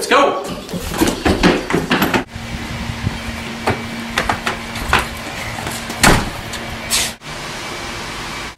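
Kids calling out and scrambling off a couch. Then footsteps and the knock and clatter of a front storm door as a family hurries out of a house, over a steady low hum, with the loudest knock about six seconds in.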